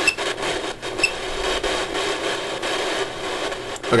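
Steady static hiss with faint crackles, played from a ghost-hunting phone app.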